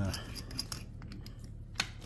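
Light metal clicks and scraping as a hole saw arbor is worked by hand into the jaws of a drill's keyed chuck to line the jaws up on the arbor's flats, with one sharper click near the end.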